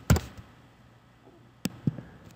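A few isolated keystrokes on a computer keyboard: one just after the start and two in quick succession near the end, over a faint steady hum.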